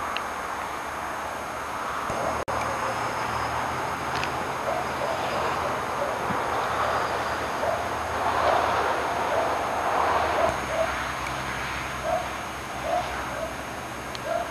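Outdoor background of steady hiss and a low hum, with a string of short, irregular animal calls in the distance starting about four seconds in. The sound cuts out completely for an instant about two seconds in.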